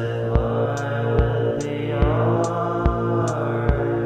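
Minimal electronic synth music: a sustained low synthesizer drone and chord with a slowly sweeping, filtered upper layer, over a low thump about every second and a short high click between the thumps.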